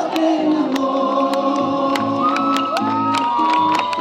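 A live band playing: electric guitar and bass over a steady drum beat, with long held notes, some bending in pitch.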